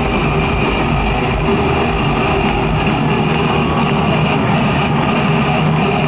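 Heavy metal band playing an instrumental passage live over an arena PA, a loud, dense, muddy wall of distorted guitars and drums, with no vocals.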